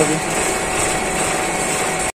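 Commercial soft-serve ice cream machine running with a steady mechanical noise and a faint constant tone.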